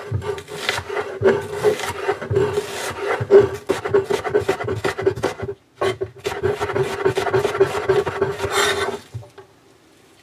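Cleaver slicing an onion on a wooden cutting board: rapid knife strokes knocking on the board, with a short pause about halfway through, stopping about a second before the end.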